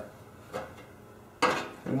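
Quiet hand-tapping: a tap wrench turning a 1/8-inch pipe tap into a generator fuel tank, with one small click about half a second in. A man's voice starts near the end.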